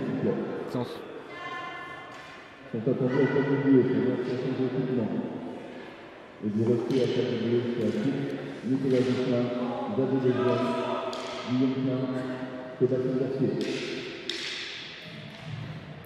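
Indistinct voices of people talking in a large sports hall, quieter than close commentary.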